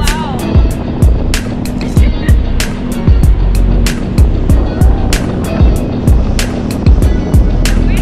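Background music with a deep, booming bass beat and fast, crisp ticking percussion.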